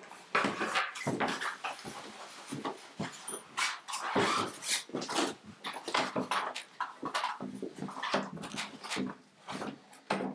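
Metal microphone stands being collapsed and handled: a run of irregular clanks, knocks and rattles, with sliding and scraping between them.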